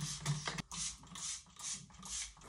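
Hand-held trigger spray bottle spritzing hair detangler onto wet hair: about four short hissing sprays in quick succession.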